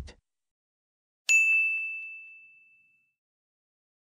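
A single bell-like ding sound effect about a second in: one bright high tone that fades away over about a second and a half. It is the cue chime that prompts the learner to read the phrase aloud.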